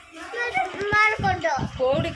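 People talking, children's voices among them, in lively overlapping chatter.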